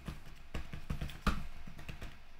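Computer keyboard being typed on: a quick, uneven run of key clicks as a short phrase is typed.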